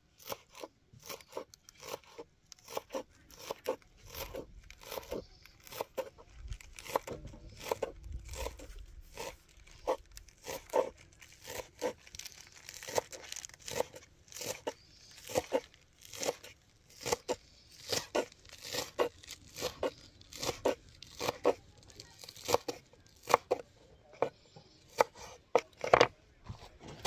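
Kitchen knife shredding cabbage on a wooden cutting board: a steady run of crisp crunching cuts, each ending in a knock of the blade on the board.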